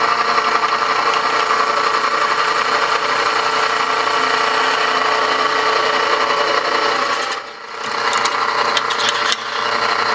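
Drill press running steadily with its bit cutting through a 1095 and 15N20 steel knife tang. The hardened tang has been softened by spheroidizing with heat, so the bit cuts and throws chips instead of skating. The sound dips briefly about seven and a half seconds in.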